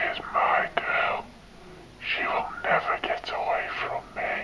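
A person whispering, in two phrases: one in about the first second, then a longer one from about two seconds in.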